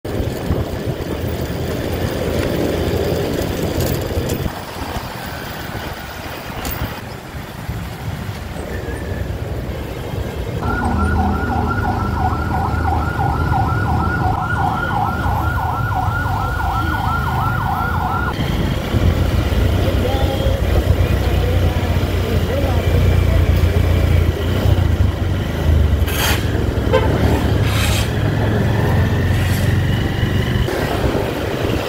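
Honda motorcycle running in city traffic, engine hum and road noise throughout. About ten seconds in, a fast-warbling siren sounds for about seven seconds, then stops.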